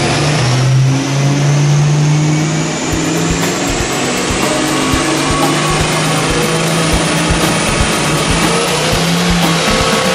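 The 1970 Ford Boss 302 V8 running hard under load on a chassis dyno during a measured pull. A high whine rises steadily in pitch throughout as speed builds.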